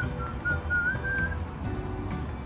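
Background music with a whistled melody line, a short wavering tune over a low steady beat, ending about a second and a half in.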